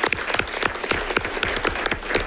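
An audience applauding: many people clapping at once, a dense, steady patter of overlapping hand claps.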